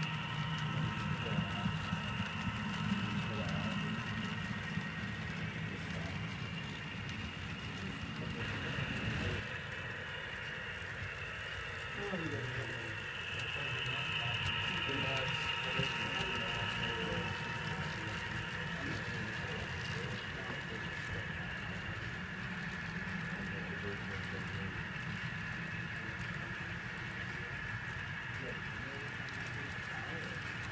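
HO scale model freight trains running on the layout: a steady low rumble of wheels and motors on the track with a steady high whine over it. The rumble drops about nine seconds in, and faint voices murmur underneath.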